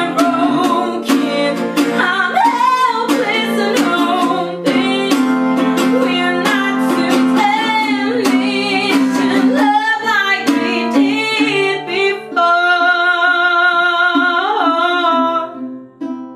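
A woman singing with a strummed acoustic guitar. About twelve seconds in the strumming stops and she holds a long wavering note that fades near the end.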